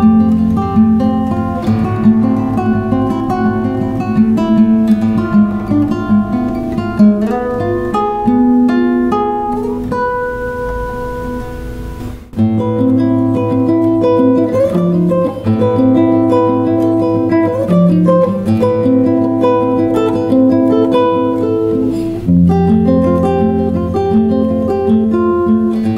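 Yamaha CG122MSH classical guitar with D'Addario nylon strings, fingerpicked: a melody of plucked notes over held bass notes. About halfway through the playing thins to one ringing note and fades, then starts again suddenly at full strength.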